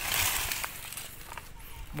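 Rustling and scraping in dry leaf litter and undergrowth for about half a second, then a few faint ticks and snaps.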